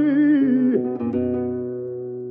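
Old flamenco recording: a male cantaor holds a long, wavering sung note that ends about a third of the way in, then Spanish guitar notes ring and fade.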